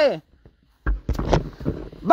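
Dull thumps and rustling about a second in, a short cluster of knocks heavy in the bass, between a man's shouts.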